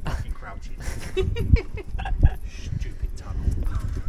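Indistinct voices over a steady low rumble, with a few thumps from people walking on a stone path, the loudest about two seconds in.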